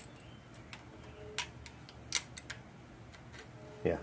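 A scattered handful of faint, sharp metallic clicks and ticks from steel feeler gauge blades being handled and slipped between the rocker arm and valve stem of a Honda GCV small engine, as the valve clearance is checked.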